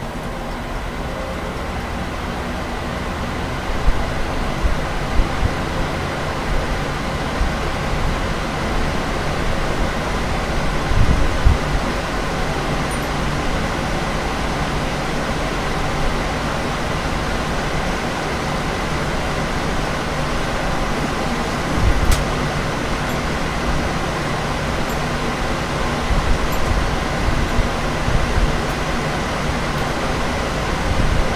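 A round high-velocity fan and three box fans running together on medium speed: a loud, steady rush of air that builds over the first few seconds, with a few short low thumps.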